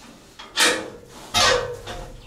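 Two short clanks from a steel pen gate being handled, one about half a second in and a heavier one with a brief ring about a second later.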